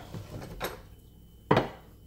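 A ceramic plate set down on a kitchen countertop with one sharp clack about one and a half seconds in, after a few light knocks as a plastic cutting board is pushed aside.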